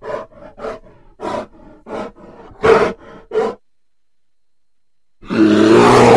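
A laugh in about seven short bursts, the gaps between them growing longer, as part of a logo intro. About five seconds in comes a loud, noisy glitch transition sound effect that lasts about a second.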